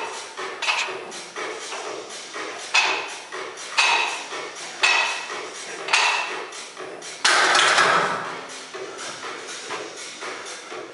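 Loaded barbell clinking and clanking with each bench-press rep, the iron plates rattling on the bar about once a second. About seven seconds in comes a longer, louder clatter.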